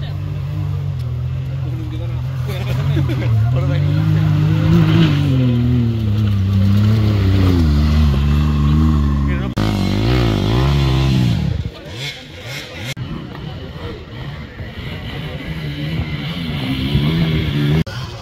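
A 4x4 off-roader's engine revving hard in waves, rising and falling as the vehicle works to drive through deep mud, for about twelve seconds before it cuts off abruptly. After that it is quieter, with only a fainter engine note near the end.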